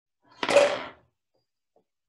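A marble rolling off a ruler ramp knocks into an upside-down plastic cup and shoves it across a wooden tabletop: one short clatter about half a second in.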